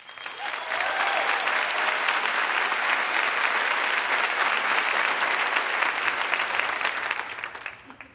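Large theatre audience applauding: the clapping builds over the first second, holds steady, and dies away near the end.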